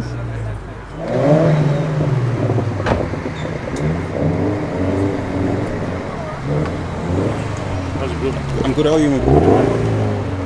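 BMW M4's twin-turbo straight-six idling, with people talking close by and a short rise in engine pitch about nine seconds in.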